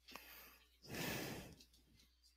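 A single breathy exhale, like a sigh, about a second in, with a faint click just before it.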